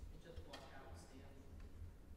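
Near silence: quiet room tone with a steady low hum, and a brief faint sound about half a second in.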